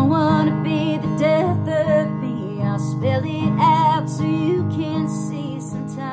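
A woman singing a slow country song with a wavering vibrato, accompanying herself on acoustic guitar.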